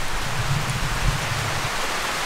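Steady rain falling, heard from under a shelter roof.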